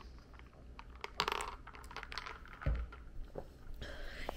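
Quiet sip through a straw from a glass jar of iced coffee, a short sip sound about a second in, with faint clicks of the jar and straw. A low thump follows a little past halfway.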